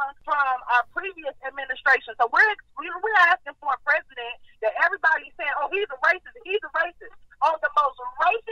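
A person talking steadily over a telephone line, the voice thin and narrow-band.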